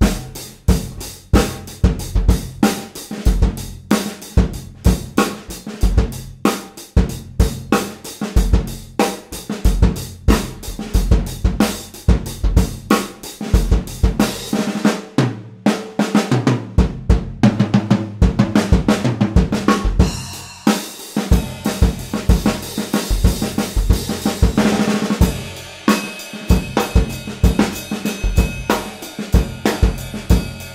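1960s Slingerland drum kit (20" bass drum, 12" and 14" toms) with a Craviotto titanium snare and cymbals, played in a continuous groove without a break. The drums are tuned very low with internal mufflers and coated Ambassador heads, giving short, tight, punchy drum notes.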